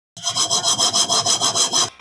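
Cartoon sound effect for a small desk lamp moving across a tabletop: a rapid, rhythmic rasping like sawing, about seven strokes a second, that starts and cuts off suddenly.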